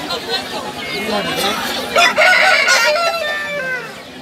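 A rooster crowing once, starting about two seconds in and lasting about a second, over crowd chatter.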